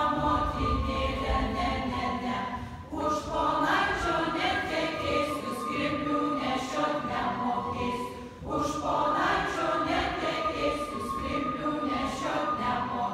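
A mixed group of children's and adults' voices singing a Lithuanian folk dance song unaccompanied, pausing briefly between phrases about three seconds in and again at about eight and a half seconds.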